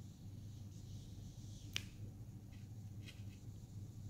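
A single sharp click near the middle, followed by a few fainter ticks later on, over a low steady hum.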